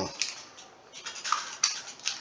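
A few short, light clicks and clinks, scattered and irregular, more of them in the second half.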